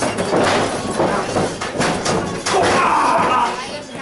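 Several thuds on a wrestling ring as two wrestlers grapple and shift their feet on the mat, with spectators shouting.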